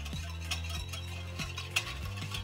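Metal wire whisk stirring a thin watery mixture in a ceramic bowl, its wires clicking against the bowl two or three times a second.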